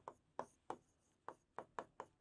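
Chalk writing on a blackboard: faint, quick taps and short scrapes, about six strokes in two seconds.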